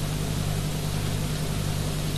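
Steady hiss with a low, even hum underneath: the recording's own background noise, with no other sound in it.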